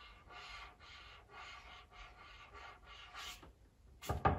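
Faint scratching of a marker pen on paper as a signature is written, about three short strokes a second.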